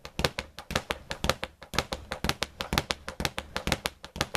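Leather speed bag punched in the basic rhythm, rebounding against an overhead wooden platform: rapid, even knocking, about six knocks a second.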